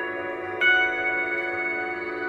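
Tibetan singing bowls ringing in long, steady tones. A little over half a second in, a bowl is struck with a wooden striker, adding a louder, brighter ring that sustains.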